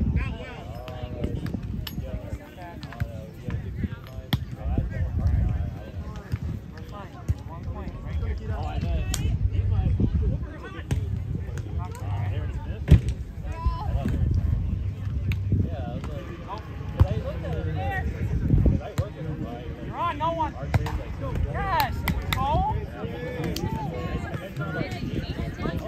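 Voices of volleyball players and onlookers talking and calling out, with a few sharp smacks of the ball being hit, the loudest roughly halfway through, over a steady low rumble.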